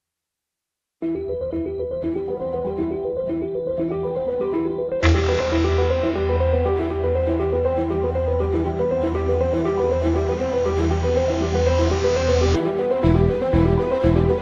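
Synthesizer music playback: a rhythmic arpeggiated pad pattern starts about a second in. About five seconds in, a deep sustained synth bass and a bright, noisy layer hit together as an impact and hold until shortly before the end. A new pulsing low pattern then takes over.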